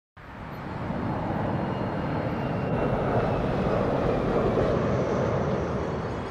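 A steady rushing, rumbling noise fades in just after the start and holds, with no clear tones.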